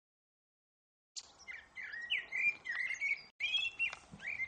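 Birds chirping in a recording played back from an extracted audio file: a run of short notes that glide up and down, starting about a second in and cutting out briefly near three and a half seconds.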